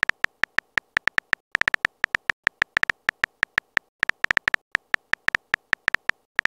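Simulated phone-keyboard keypress clicks, one short high tick per letter typed, several a second in an uneven typing rhythm with a couple of brief pauses.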